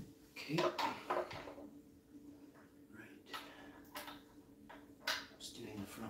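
A handful of light clicks and knocks from objects being handled, the loudest cluster about a second in, over a faint steady electrical hum.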